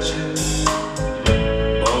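Live band playing a slow ballad, with electric bass, drum kit and regular drum strikes about every half second. A male voice sings one word near the end.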